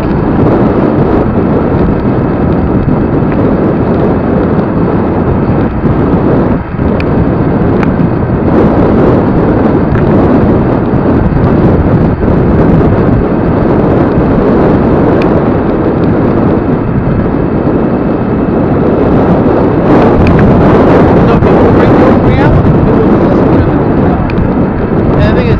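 Steady, loud wind rush on the microphone of a moving vehicle, mixed with road and traffic noise. It grows a little louder and brighter about twenty seconds in.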